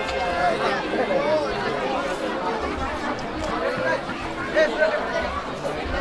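Several people talking at once: overlapping crowd chatter with no single clear voice.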